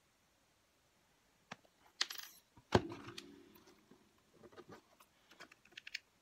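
Small hard craft pieces handled on a work table: a short rustle, then one sharp clink with a brief ring, followed by light taps and clicks.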